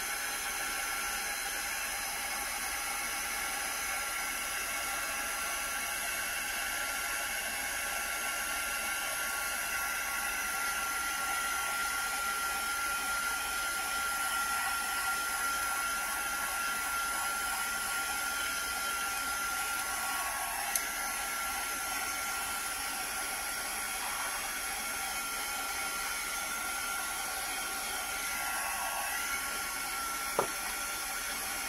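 Small handheld craft heat gun running steadily, blowing hot air to dry decoupage medium on napkin-covered paper: a constant blowing hiss with a thin, steady whine. One light click about two-thirds of the way through.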